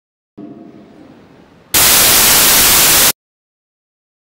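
Dead silence broken by a faint sound, then a loud burst of harsh static lasting about a second and a half that cuts off suddenly: an audio dropout and glitch in the stream's sound feed.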